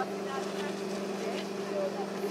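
A steady, even machine hum, with faint voices over it.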